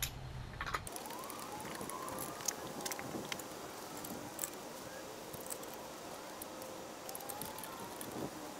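Lug nuts being threaded onto a wheel's studs by hand, giving faint scattered small metallic clicks. A faint tone rises and falls slowly in the background.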